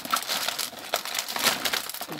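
Plastic blind bags and paper confetti sliding and tumbling out of a cardboard piñata onto a table: a busy run of crinkling, rustling and small clattering clicks.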